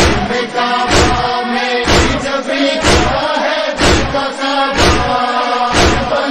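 Noha lament: a group of voices chants between the reciter's lines over a steady matam beat of hands striking chests, about one beat a second.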